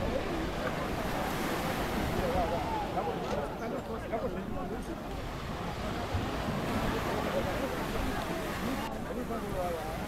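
Steady wind buffeting the microphone over surf at the shore, with many distant voices calling and chattering underneath.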